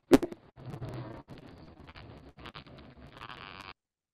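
Accelerometer recording of vibrations inside a wintering honey bee colony: a sharp artificial vibration pulse, then about three seconds of stronger bee buzzing that cuts off abruptly near the end. The buzzing is the colony's winter response to the stimulus, a buzzing enhancement perhaps revealing colony restfulness.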